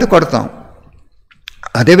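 A man's voice giving a talk, breaking off for about a second; a few small, quick clicks fall in the pause just before he speaks again.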